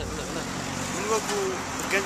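Steady outdoor street noise with road traffic in the background, and a short stretch of voice about a second in.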